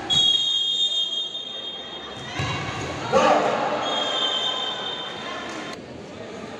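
A whistle blown in two long blasts of about two seconds each, the second beginning about four seconds in. A brief rise of crowd shouting comes just after three seconds.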